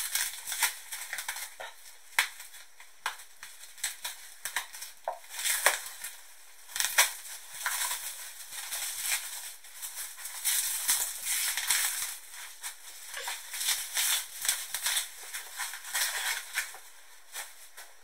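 Packaging being pulled and torn off a set of books by hand: continuous crinkling and crackling, with louder bursts now and then.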